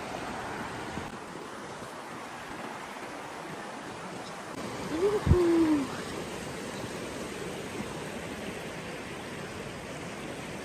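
Steady rush of a shallow river flowing over rocks. About five seconds in, a single short pitched call rises, then holds and falls slightly for under a second, with a sharp knock at its start.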